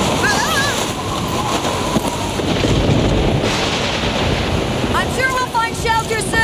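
Storm sound effects for an animated scene: heavy rain and gusting wind as a steady loud wash of noise. A voice cries out briefly near the start, and shouting comes again near the end.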